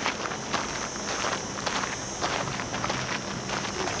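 Footsteps crunching on a sandy, gritty hillside path, irregular steps about two to three a second, with a faint steady high insect buzz behind them.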